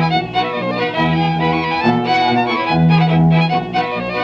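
Fiddle-led Ukrainian village dance band playing an instrumental passage on a historic 1928–1933 recording, with a bass line on repeated long low notes under the fiddle melody.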